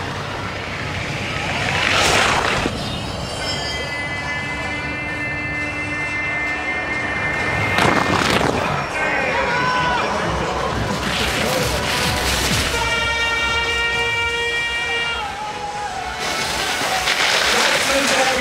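Ski jump crowd with air horns sounding in long steady blasts. About two seconds in there is a brief rush of noise as the jumper's skis run down the inrun track past the microphone, and about eight seconds in the crowd noise swells as he lands.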